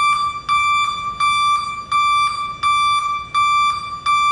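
Buyers Products electronic back-up alarm, rated at 102 dB, beeping loudly: a single high-pitched tone pulsing on and off about one and a half times a second, each beep lasting about half a second.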